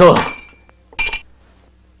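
A glass clinks once, sharp and brief with a short high ringing, about a second in.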